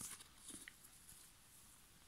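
Near silence, with a few faint soft ticks in the first second from a cardboard thread organiser and embroidery floss being handled.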